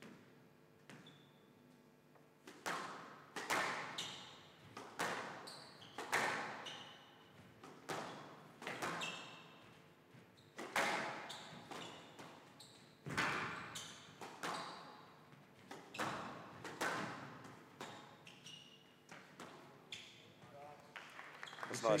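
A squash rally: the ball cracking off rackets and the court walls about once a second, each hit ringing in a large hall, with short shoe squeaks on the court floor between hits. The hits start about two and a half seconds in.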